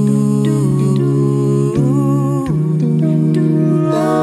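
A cappella Christmas song in a wordless passage: several voices humming held chords in harmony over a low bass line, the chord shifting every second or so.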